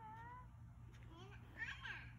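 Faint, high-pitched voices gliding up and down in pitch, with a louder, higher burst near the end.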